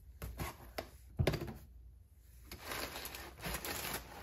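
Cast-metal SU HS2 carburetors being handled in a cardboard box: a few clicks and knocks, with one solid thunk about a second in. After that comes a longer rustle of crumpled packing paper as a hand digs into the box.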